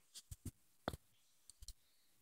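A handful of faint, short clicks at irregular intervals in a quiet room.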